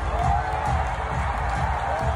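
Wrestler's entrance music played over the arena loudspeakers, a steady pulsing beat, with the crowd cheering underneath.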